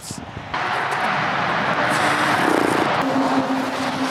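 Steady rushing noise of road traffic going by, with a low engine hum joining in about halfway through.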